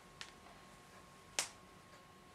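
Two sharp clicks: a faint one right at the start and a loud one about a second later. A faint, steady high-pitched whine sits underneath.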